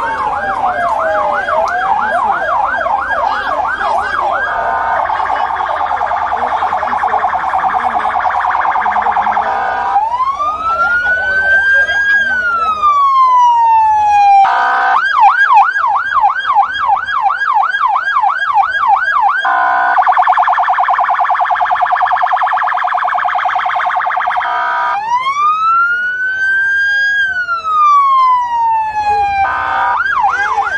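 Electronic vehicle siren cycling through its tones: about four seconds of fast yelping sweeps, then a very rapid warble, then one slow rising-and-falling wail, the sequence running through twice.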